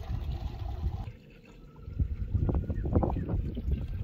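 Water trickling and splashing at a concrete livestock trough, with wind rumbling on the microphone. About two seconds in, a run of irregular splashes and knocks follows.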